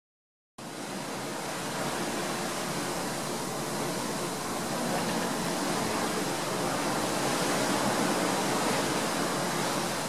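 FM radio static from a Sangean ATS-909X's speaker: a steady, even hiss that starts about half a second in, as the radio is tuned up through an FM band with no stations on it.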